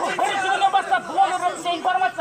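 Crowd chatter: many people in a large gathering talking at once.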